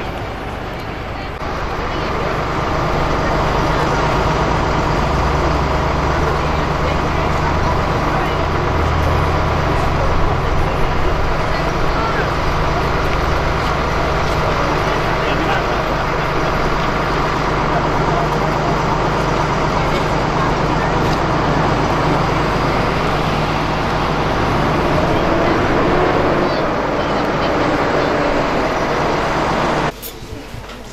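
A motor vehicle's engine running steadily, with the chatter of a walking crowd.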